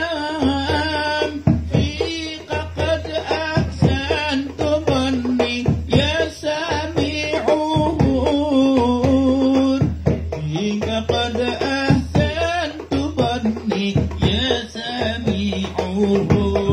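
A man singing an Arabic devotional sholawat (praise song for the Prophet) into a microphone, with a single ornamented melody line that bends and wavers, accompanied by steady hand-drum strokes.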